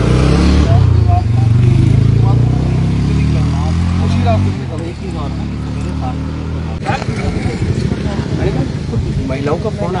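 A motor vehicle engine running close by, loud for the first four or five seconds with its pitch rising slightly, then dropping away, with voices in the later part.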